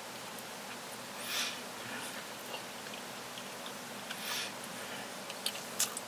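Quiet eating sounds over steady room hiss: soft chewing and two short breaths, with a few small sharp clicks near the end.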